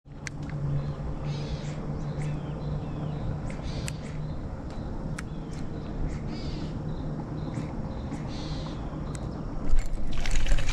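About four harsh bird calls a couple of seconds apart, like crows cawing, over a steady outdoor background with scattered sharp clicks. A sudden loud knock comes just before the end.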